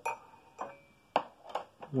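About five light metallic clicks and taps from washers and a copper wire being handled against a lawn mower's stop lever and spring. The first click leaves a brief high ring.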